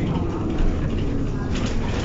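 Cabin sound of a city transit bus on the move: a steady low engine and road rumble, with faint passenger voices underneath.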